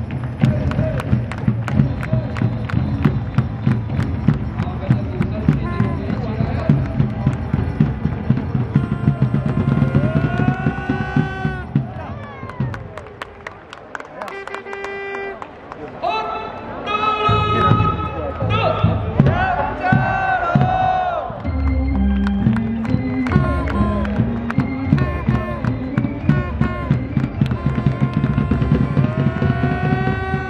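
Cheer music with a steady driving beat over the ballpark sound system, with voices singing or chanting along in pitched lines. The beat drops away for a couple of seconds about halfway, then comes back.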